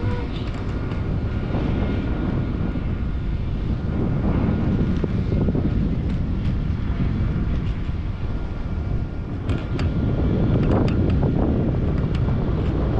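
Wind buffeting the microphone of a pole-held action camera in flight under a parasail: a loud, uneven rumble. A few sharp clicks come near the end.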